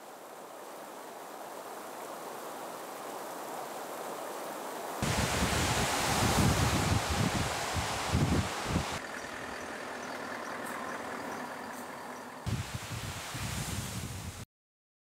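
Steady rush of muddy floodwater surging over rocks. About five seconds in it changes abruptly to a wet highway in heavy rain: the hiss of tyres on the soaked road and passing cars, with low rumbles.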